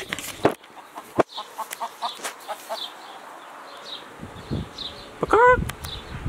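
A chicken clucking softly in short repeated notes, then giving a louder, drawn-out call near the end.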